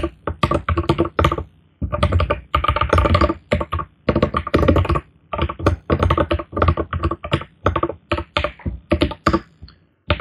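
Fast typing on a computer keyboard: quick runs of keystrokes broken by short pauses, one just before two seconds in and another around four seconds in.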